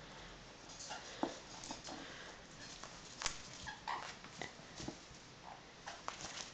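Caique parrot giving short, squeaky chirps while nudging a ping pong ball about, with a few sharp taps in between, the loudest about three seconds in.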